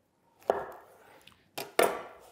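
Large knife cutting through smoked beef and striking a wooden cutting board: three sharp knocks, one about half a second in and two close together near the end.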